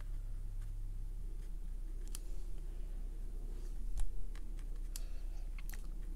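Watercolour brush dabbing and tapping on cold-press paper: a few faint, scattered clicks over a steady low hum.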